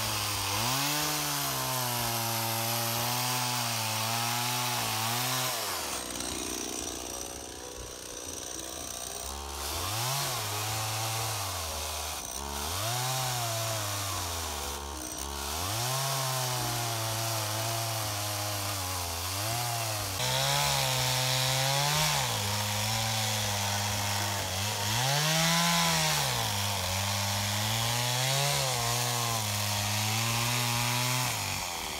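Stihl two-stroke chainsaw ripping lengthwise through a cedar log. Its engine speed sags under the load and picks back up over and over, the mark of a saw the owner says is not really meant for this work. About six seconds in it drops low for a few seconds, then revs back up.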